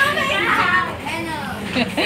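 Speech: lively talk from young voices, with no other sound standing out.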